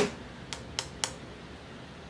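A few light clicks as a glass jar of sourdough starter is handled: three short ticks in the first second, then quiet room tone.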